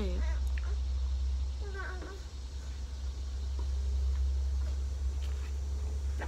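A single brief high-pitched call that rises and then falls, about two seconds in, over a steady low outdoor rumble.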